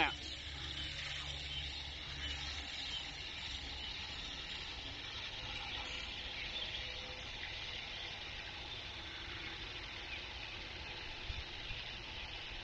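Water from a garden hose wand running into a plastic five-gallon bucket, a steady rush as the bucket fills to mix a fertilizer solution.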